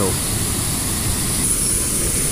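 Water gushing through an opened sluice in a canal lock's upper gate into the lock chamber, a steady loud rush: the chamber is filling to raise the boat to the upper level.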